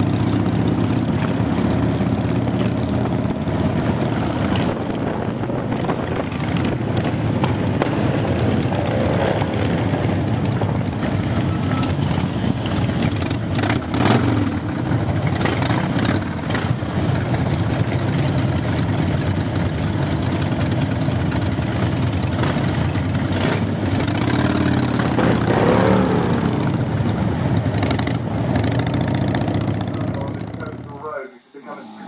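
Harley-Davidson V-twin motorcycle engines running steadily in a group ride, heard from a moving bike, with a couple of brief louder swells.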